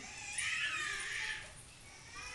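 A snake hissing once, a breathy hiss lasting about a second.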